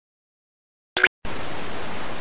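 A brief click about a second in, then steady television static hiss: the white-noise sound of a TV tuned to no signal, switched on by the remote.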